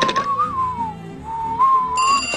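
A cartoon character whistling idly: a single thin note that wanders up and down like a lazy little tune. A telephone bell starts ringing right at the end.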